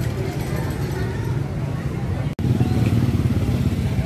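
Small motorcycle engine running steadily at low speed, with faint voices in the background. The sound breaks off for an instant a little past halfway.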